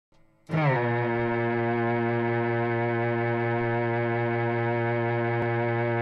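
Electric guitar played through an Electro-Harmonix Mel9 tape replay pedal, sounding one long, low, bowed-string-like note. It starts about half a second in with a short downward slide, then holds steady.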